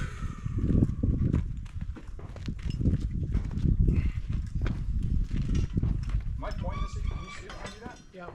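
Indistinct talking among people, with rustling and frequent short knocks and thumps close to the microphone.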